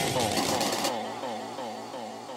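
Techno track in a breakdown with no kick drum: a wavering, pitch-bending melodic line carries on alone, its top end filtered away about a second in as it fades down.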